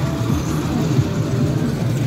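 A steady, loud, low engine rumble, like a motor running without change in speed.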